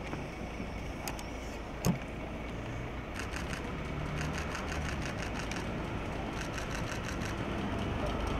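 A car engine idling steadily, with a single sharp click about two seconds in. From about three seconds on come rapid runs of camera shutter clicks, about four a second, as photographers shoot.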